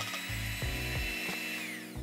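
Electric hand mixer beating whipping cream in a bowl: a high motor whine that holds steady, then winds down and stops near the end.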